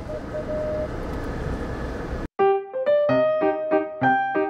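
Road and engine noise inside a moving car's cabin for about two seconds, then a sudden cut to piano background music playing repeated chords.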